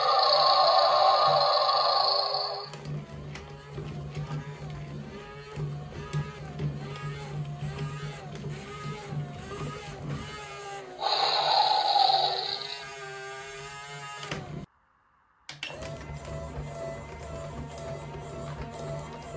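RoboAlive Dragon toy playing its roar sound effect twice through its small speaker, first for about two and a half seconds and again about 11 s in. Between the roars its walking motor runs with a steady hum under a warbling tune. The sound breaks off for under a second near the end, then starts again.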